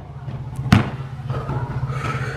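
A basketball bouncing once on the asphalt court, a single sharp thud about three-quarters of a second in, over a steady low hum.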